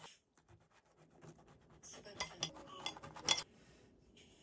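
A metal knife and fork cut a crisp honey rusk on a ceramic plate. The first two seconds are quiet, then comes a run of scraping and sharp clinks of cutlery against the plate, the loudest clink near the end.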